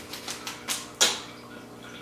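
Thin paper receipt being handled and unfolded: a few soft crinkles, with one sharper crinkle about a second in.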